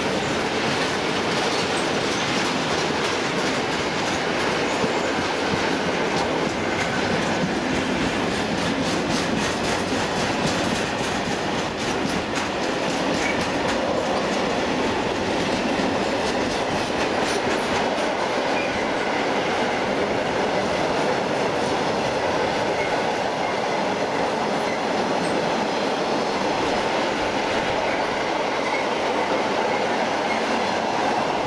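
Freight train wagons rolling past close by: a steady rumble of steel wheels on the rails with rapid clicks over the rail joints, most distinct in the middle.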